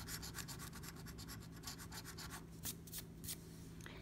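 A coin scratching the coating off a scratch-off lottery ticket in rapid, faint back-and-forth strokes. The steady scratching stops about two and a half seconds in, and a few last strokes follow.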